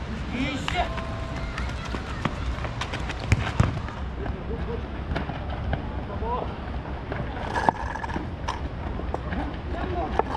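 Football kickabout on a dirt pitch: players' voices calling at a distance, with a few sharp thuds of the ball being kicked, two close together about a third of the way in and another later.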